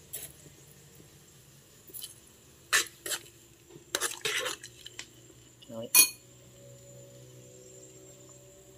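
A spoon knocking and clinking against a metal cooking pot as it is stirred: a handful of sharp separate clinks, the loudest about six seconds in.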